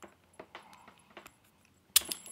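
Faint metallic clicks and taps of a bobby pin working inside a steel chain handcuff's lock, a few scattered ticks, then one sharper click near the end as the cuff releases open.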